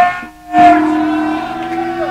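Live heavy rock band's amplified instruments holding a droning chord of steady sustained tones. The sound drops out sharply for a fraction of a second about a quarter second in, then the held notes come straight back.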